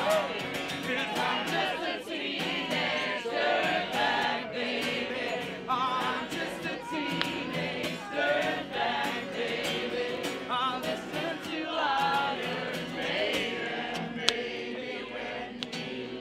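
Crowd singing along together, with a strummed acoustic guitar.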